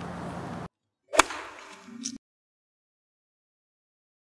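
Steady outdoor background noise cuts off abruptly and is followed by a short outro sound effect: one sharp hit about a second in with a brief tail, then a smaller accent a second later, then silence.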